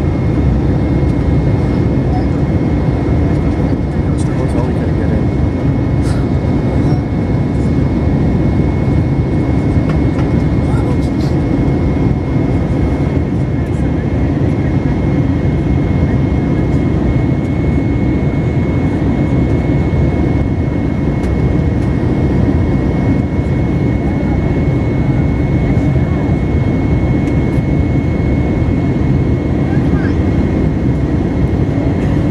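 Airbus A321 cabin noise in climb, heard from a window seat over the wing: the IAE V2500 turbofan engines and airflow make a loud, steady roar with a thin steady whine above it.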